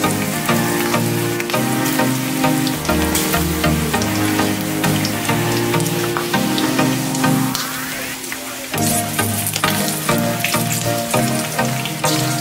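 Bacon sizzling and crackling in a frying pan, with a dense patter of small pops, over background music that drops out briefly about eight seconds in.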